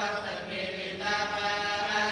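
A Hindu priest chanting mantras into a microphone in long, held notes, with a brief lull about half a second in before the chant picks up again.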